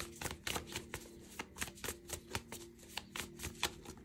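A deck of tarot cards being shuffled by hand: a quick, uneven run of soft clicks and flicks as the cards slide against each other.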